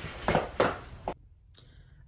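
Two footsteps on a hard floor, about a third of a second apart, then near silence with a faint hiss for the second half.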